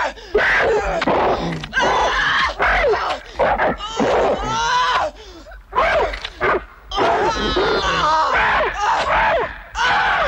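A woman screaming and groaning in pain in a run of separate cries, heard from a film's soundtrack as she is slashed.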